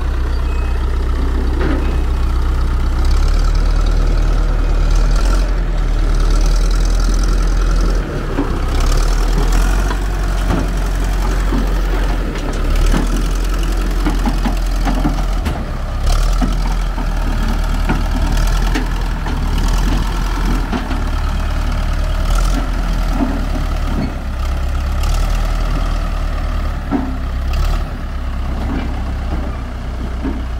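Fiat-Allis 8D crawler bulldozer's diesel engine running under load as the machine climbs onto a trailer, with repeated clanks and knocks from its steel tracks and the ramps.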